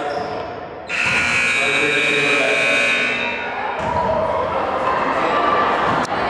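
Gym scoreboard buzzer sounding for nearly three seconds as the game clock runs out to zero, starting suddenly about a second in, over crowd voices in a large hall.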